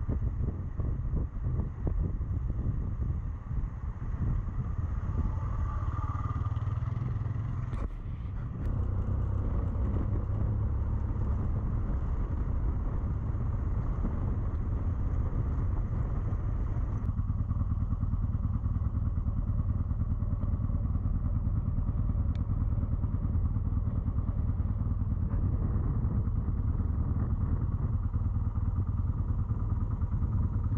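Motorcycle engine running steadily under way on a dirt and gravel track, heard from the rider's own bike, with knocks and clatter from the rough surface in the first several seconds. The sound shifts abruptly about eight and seventeen seconds in.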